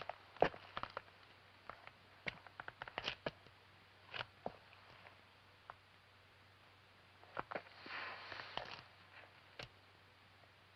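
Quiet, scattered small clicks and knocks of footsteps and hands brushing along wooden walls in a narrow passage, with a short rustle near the end.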